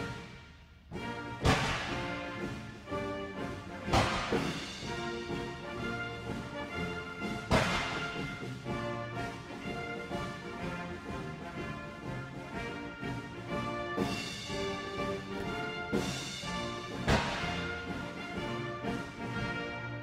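Military band music playing for honors, with a saluting battery's cannon firing several separate shots over it that ring out and fade.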